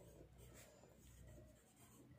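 Very faint scratching of an HB graphite pencil writing a word on a paper workbook page, barely above near silence.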